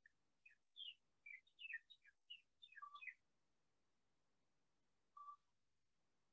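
Faint bird chirps: a quick, irregular string of short, high falling notes over the first three seconds, then a single lower note just after five seconds.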